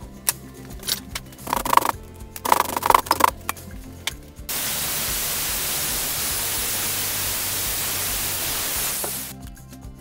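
A few sharp metal clinks from a wrench and steel parts at the vise, then an angle grinder grinding pins off an iron mounting plate for about four and a half seconds, stopping shortly before the end.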